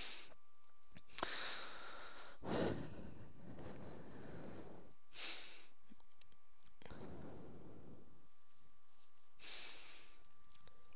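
A person breathing close to the microphone: about five soft breaths a few seconds apart, over a faint steady tone.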